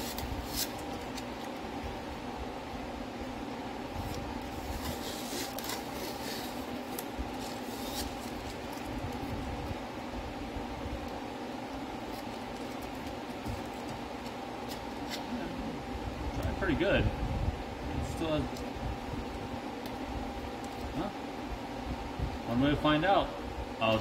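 Masking tape being peeled off a clear plastic housing, with crackling and rustling handling noises in the first several seconds, over a steady low hum. A man's voice mutters briefly near the end.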